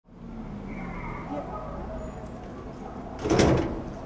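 A door sliding, heard as one short, loud rush about half a second long a little past three seconds in, over a steady street background with faint voices.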